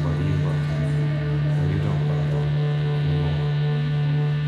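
Droning intro music: a loud, steady low hum with fainter sustained tones layered above it.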